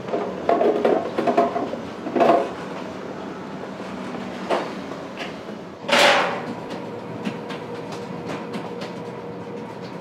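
Metal baking trays clattering and knocking, with a louder scrape about six seconds in and a run of light clicks later, over a steady machine hum.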